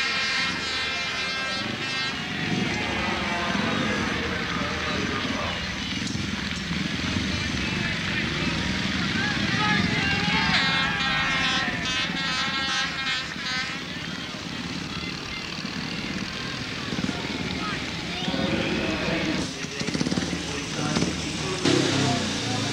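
Speedway motorcycle's single-cylinder engine running as the bike rides slowly around the track, over steady stadium crowd noise, with an unclear public-address voice around the middle of the stretch.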